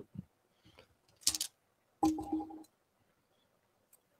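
A hand drawing a piece from a cloth pouch of rune pieces: a brief clicking rattle of the pieces knocking together about a second in. A short hummed note follows about two seconds in, with little else.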